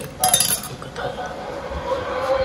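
Porcelain bowl clinking as it is handled on the table: one bright clink lasting about half a second near the start.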